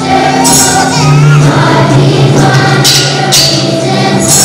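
Children's choir singing a Christmas song, with tambourines jingling in short pairs of shakes alongside the voices.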